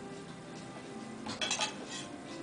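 A quick run of three or four light clinks of tableware being handled on a tray, about a second and a half in, over quiet background music.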